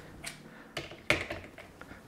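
A few light clicks and knocks of metal parts as the vertical arm of a Really Right Stuff PG-02 gimbal head is turned around and set onto the clamp of its horizontal base, spaced out over about the first second.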